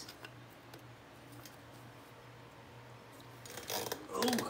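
Steel open-end wrenches working the nuts on a double-nutted hub stud: faint small clinks over a steady low hum, then a short burst of metal scraping and rattling near the end.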